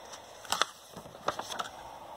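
A picture book's paper page being turned by hand: short dry rustles and crinkles, the loudest about half a second in and a few more around a second and a half in.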